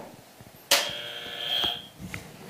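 Red buzzer button sounding once: a sudden buzz starting a little under a second in and lasting just over a second. It is the signal that a speaker has run past the 90-second time limit.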